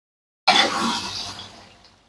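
Green chilli sambal sizzling as it fries in oil in a wok while being stirred with a spatula. The sizzle starts suddenly about half a second in and fades over the next second and a half.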